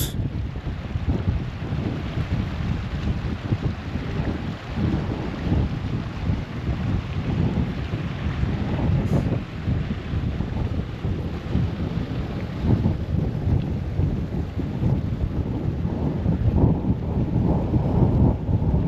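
Wind buffeting the camera's microphone outdoors: an uneven, gusting rumble that rises and falls throughout.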